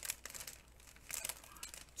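Paper and card pieces of a card kit rustling and crinkling as they are handled and counted, a few short crackles with the loudest near the start.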